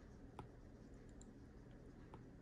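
Near silence, broken by a single faint click about half a second in: a stylus tapping a tablet's glass screen.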